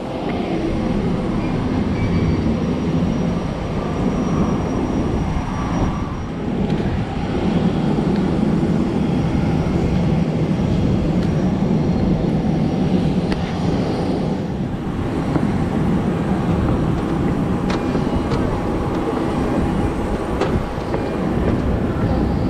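Steady loud mechanical rumble from aircraft around the airport apron, with a faint high whine through the first half.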